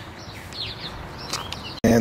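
Small birds chirping: a few quick falling chirps about half a second in and again a little later, over faint outdoor background noise.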